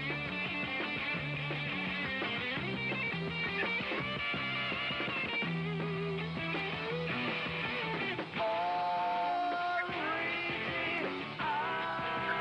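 Rock and roll band playing: electric guitars over a moving bass line. It grows louder with a long held note about eight seconds in.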